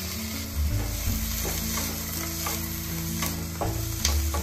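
Onions, green chillies and chopped tomatoes sizzling in butter in a white-coated frying pan, with a wooden spatula stirring and scraping them a few times.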